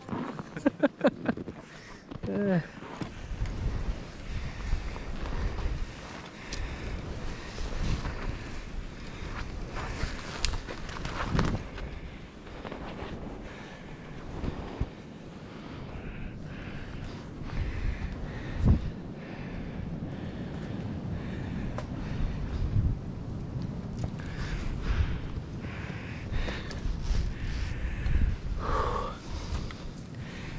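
Wind rumbling on the microphone while someone moves on foot through snowy young birch woods, with uneven knocks and rustles from steps in the snow and twigs brushing past.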